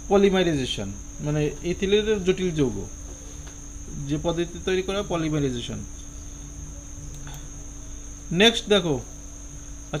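A man speaking in short phrases with pauses between them, over a steady high-pitched whine that runs throughout.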